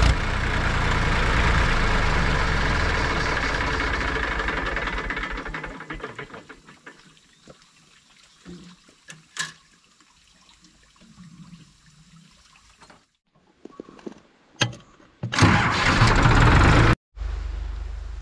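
Massey Ferguson tractor's engine running loudly with smoke from its exhaust stack, then dying away about six seconds in. Near the end comes a short, loud burst of rushing noise.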